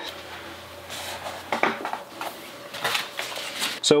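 Hands handling paper while peeling adhesive target dot stickers and pressing them onto a paper sheet over cardboard: soft rustling with a few short scrapes and taps.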